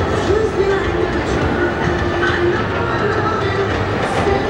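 Busy city street noise: a steady, heavy rumble of passing traffic or trains, with a song faintly audible from the loudspeakers of a giant outdoor video screen.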